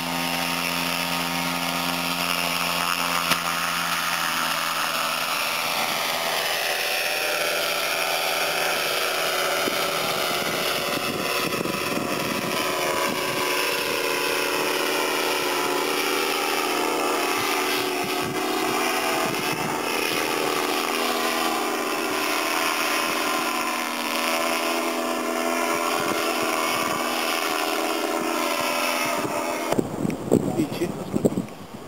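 Paramotor engine and propeller running at high power during the takeoff run and climb: a steady buzzing drone whose pitch slowly drops over the first ten seconds or so, then holds.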